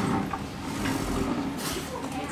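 Light clatter of glasses, a water pitcher and plates being moved on a diner table over steady room noise, with a short hiss near the end.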